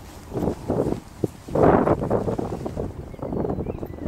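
Wind blowing on the microphone in irregular gusts, loudest from about one and a half seconds in.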